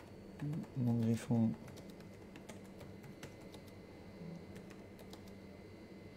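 Typing on a keyboard: faint, irregular keystroke clicks, a few at a time, as a comment is typed out. A man murmurs a few words about a second in.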